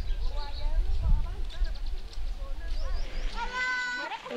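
High-pitched voices, most likely roadside children, calling out in short cries, then one long, drawn-out high call near the end, over a low rumble of wind on the microphone.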